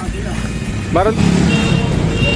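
Street traffic with a motor vehicle engine running close by, growing louder and heavier about a second in, with a short rising voice sound just before.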